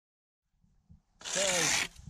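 After a second of silence, a short scraping rasp of about half a second: a plastic kayak hull or paddle sliding over snow on a frozen lake.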